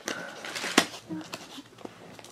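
Fingers pulling and picking at a small cardboard blind box to open it, the card rustling, with one sharp click of card a little under a second in.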